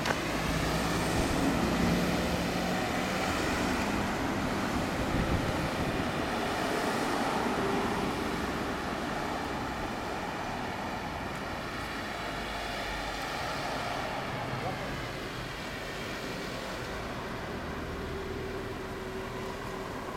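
Suzuki GSX1300R Hayabusa's inline-four engine running steadily through a WR'S aftermarket exhaust.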